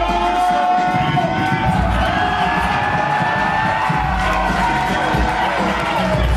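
Music playing with a crowd cheering.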